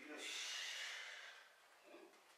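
A man breathing out hard: after a brief voiced start, one long hissing breath of about a second and a half.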